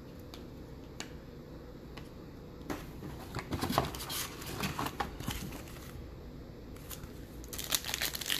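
Foil trading-card pack wrapper crinkling as it is handled, with a few light clicks at first and crackles from about three seconds in. A denser burst of crinkling near the end as the pack is torn open.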